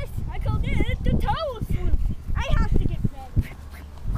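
Young children making high-pitched, wavering wordless vocal sounds in play, sliding up and down in pitch for the first two and a half seconds or so, then quieter. A steady low rumble runs underneath.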